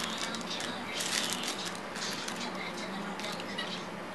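Plastic packaging crinkling and rustling as small accessory packets are handled and opened, with background voices of other people talking.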